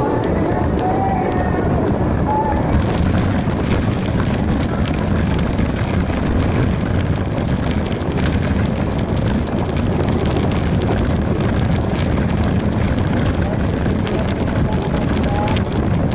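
Wind rushing over a moving action camera, with steady tyre and road rolling noise and scattered light clicks and rattles.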